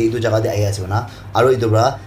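Speech only: a voice reading a news story in steady narration.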